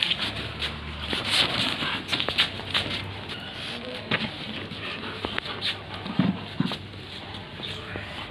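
Labrador retriever tugging and shaking a cloth in a game of tug-of-war: fabric rustling and scuffling with many short scrapes and knocks, and a couple of short low play growls about six seconds in.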